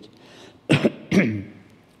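A man at a close microphone makes two short vocal bursts about half a second apart, a throaty non-speech sound between sentences.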